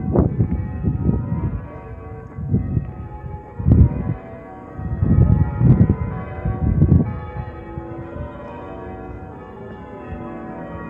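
Cathedral church bells being rung in changes, many tones overlapping and ringing on. Several loud low rumbling bursts cut across them, the strongest about four seconds in and again between five and seven seconds.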